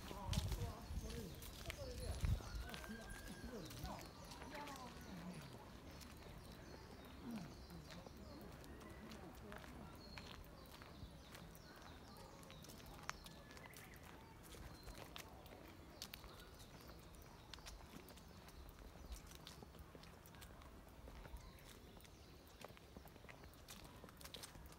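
Quiet outdoor walking ambience: footsteps on a paved path as faint ticks throughout, with people talking quietly in the first few seconds and wind buffeting the phone's microphone at the start.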